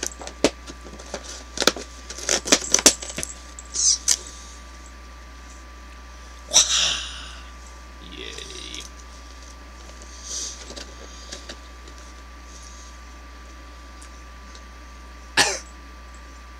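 Cardboard advent calendar box being handled while its numbered door is pressed and opened: a quick run of sharp clicks and taps in the first few seconds, then a few short, scattered rustles.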